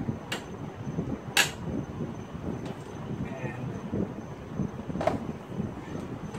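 Metal parts and hand tools clicking and knocking during hands-on work in a car's engine bay: three sharp clicks, the loudest about a second and a half in, over low shuffling and rustling.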